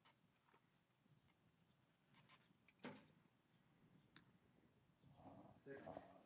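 Near silence with faint outdoor background, broken about three seconds in by one sharp crack as an arrow is shot from a recurve bow. Faint voices come in near the end.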